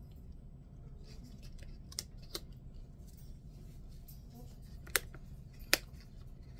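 Handling sounds from a small paper advent-calendar pouch being opened by hand, with a few sharp clicks; the two loudest come near the end.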